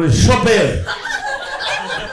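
Men chuckling and laughing, with bits of speech mixed in; the laughter is loudest in the first second and then tails off.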